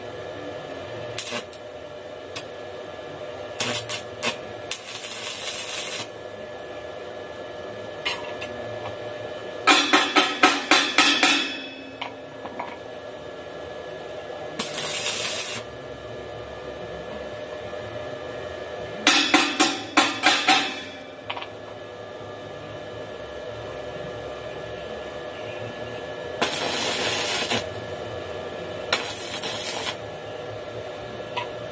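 Arc welding on a steel tube frame. The arc crackles in bursts of one to two seconds, three times. Twice there is a run of rapid sharp metallic taps, about four or five a second, and all of it sits over a steady hum.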